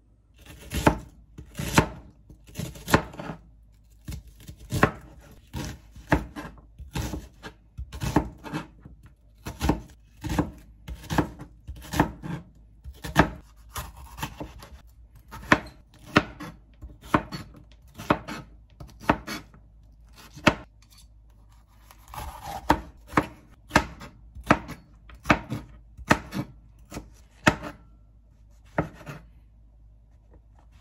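Chef's knife slicing bell peppers and mushrooms on a plastic cutting board: a steady run of sharp knocks, about one or two a second, as the blade strikes the board.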